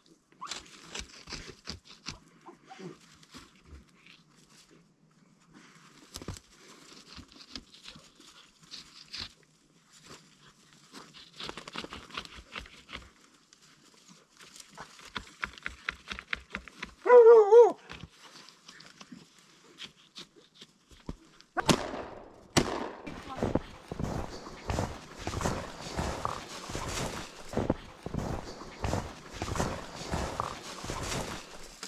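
Faint rustling and scraping in snow, then about 17 seconds in a single loud, wavering bark from a hunting dog. From about 22 seconds, quick crunching footsteps through snow.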